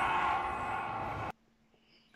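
Movie soundtrack playing a steady rushing roar with held tones beneath it, cut off suddenly a little over a second in, leaving near silence.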